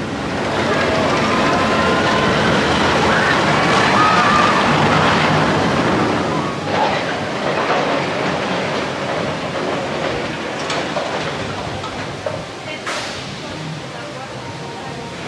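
A roller coaster train running on its track, a dense rumble that swells in the first second and slowly fades over the rest, over general amusement-park noise.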